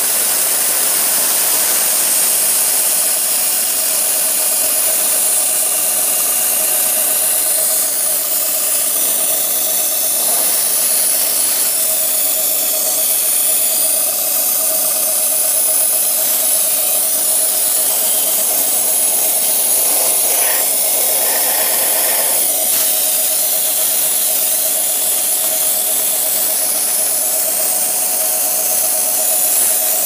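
Haas CNC mill spindle running steadily with a whine as its end mill cuts a plastic block, over a constant hiss of compressed air blowing the chips away.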